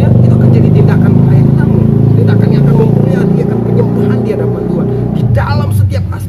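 A loud, steady low motor drone, like an engine running close by, that drops away about five seconds in.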